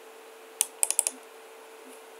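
A quick cluster of about five sharp clicks from the computer's mouse or keys, just over half a second in, over a faint steady background hum.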